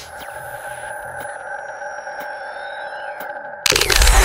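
Electronic logo-intro sound design: a steady synthetic drone of several held tones, with faint sliding whistles above it and a few soft ticks. About three and a half seconds in, a loud whoosh cuts in and takes over.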